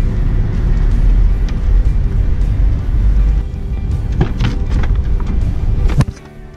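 Loud low street rumble of wind on the microphone and traffic, with music under it and a few short knocks about four seconds in; it drops away suddenly at the end.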